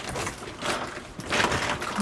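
Irregular rustling and scuffing as a very heavy potted cactus, wrapped in a woven plastic bag, is manhandled and carried. It comes as a few short noisy bursts, the loudest about one and a half seconds in.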